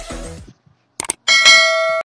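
Electronic dance music fading out, then a quick double click and a bright bell ding that rings on: the sound effects of an animated subscribe-button and notification-bell graphic.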